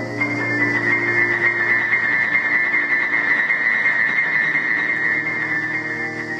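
Grand piano played solo: a fast trill high in the treble, held through the whole stretch, over a low sustained bass note.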